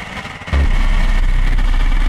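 Electronic synthesizer music: a loud, very deep bass drone comes in suddenly about half a second in, over a steady high tone and a noisy texture.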